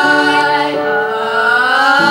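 A small ensemble of young female voices singing close harmony a cappella: sustained chords, with one voice gliding upward in pitch across the held notes.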